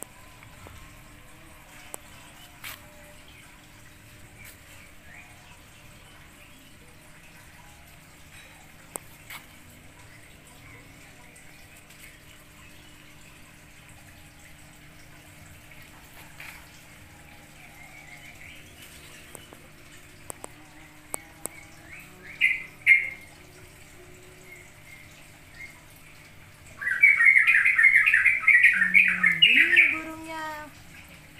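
Birds chirping: a brief burst of chirps about three-quarters of the way in, then a loud, rapid run of chirping over the last three seconds.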